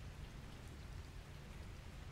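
Faint, steady rain-like background noise with a low rumble underneath.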